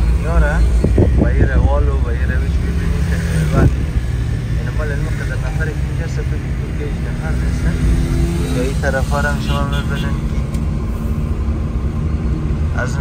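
Inside a car driving in city traffic: steady low engine and road rumble fills the cabin, with a single sharp knock a few seconds in. Voices rise over it near the start and again near the end.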